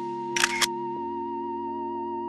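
Background music of sustained, softly held keyboard chords, with a camera shutter firing once about half a second in as a quick double click.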